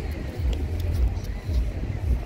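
Wind buffeting the microphone as an uneven low rumble that swells and fades in gusts, with faint voices of passers-by underneath.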